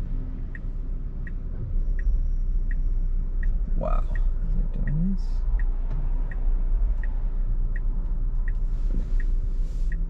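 Tesla Model Y turn-signal indicator ticking in even, steady clicks, roughly one every three-quarters of a second, over the low hum of the car's cabin as it waits at a light to turn right.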